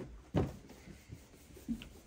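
Handling at a whiteboard: a sharp knock about half a second in, then a smaller one, with quiet scuffing of a whiteboard eraser wiping the board.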